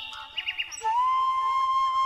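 Background flute music: after a short dip, a few quick high chirps, then a long held flute note begins about a second in.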